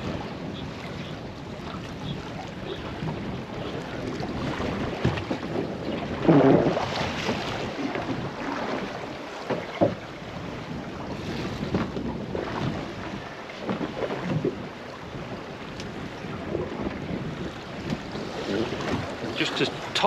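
Wind buffeting the microphone over water lapping at the hull of a small boat on a choppy sea. The wind comes in a louder rush about six seconds in, with a few short knocks scattered through.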